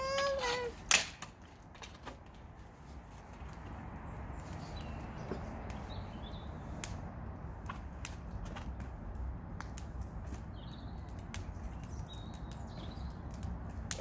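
Wood bonfire burning: scattered sharp crackles and pops over a low, steady rumble of flames. A child's voice and a single sharp knock come in the first second.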